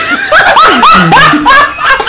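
Someone laughing hard in a quick string of high-pitched, rising whoops.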